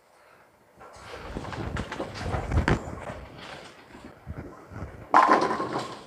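Bowling ball rolling down the lane with a rumble that builds and fades over about four seconds, then crashing into the pins about five seconds in, a loud clatter of pins.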